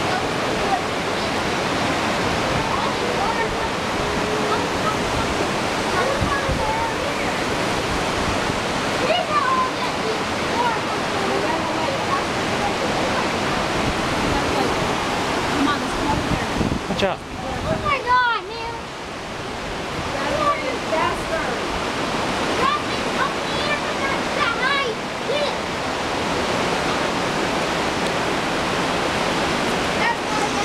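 Steady rush of a waterfall and the rapids of the creek below it, a continuous roar of falling and tumbling water.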